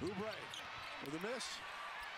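Basketball game broadcast sound: a steady arena crowd murmur with basketballs bouncing on the hardwood court. Two short snatches of a voice come in, one at the start and one about a second in.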